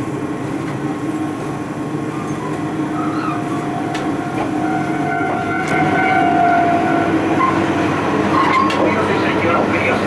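Running noise heard at the gangway between a KiHa 28 and a KiHa 52 diesel railcar under way: DMH17-series diesel engines and wheels on the rails, with occasional sharp clanks from the steel gangway plates as the cars shift against each other. About five seconds in, a high squeal sounds for a couple of seconds.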